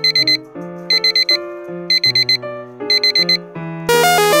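Electronic alarm-clock beeping over background piano music: quick bursts of about four high beeps, repeating about once a second, four times. Just before the end a loud, dense new sound cuts in.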